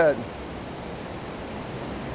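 Steady rush of moving water in an indoor rowing tank, where water pumped up by propellers flows down the troughs past the oars.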